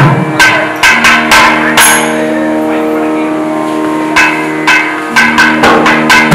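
Thavil barrel drum strokes, a quick run in the first two seconds, then a pause of about two seconds before the strokes resume. A steady held drone note sounds underneath.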